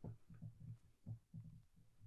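Near silence: room tone with faint, short low thuds, a few to the second.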